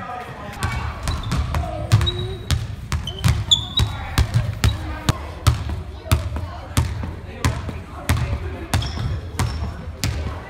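Basketballs bouncing on a hardwood gym floor, a steady stream of irregular thuds, two or three a second.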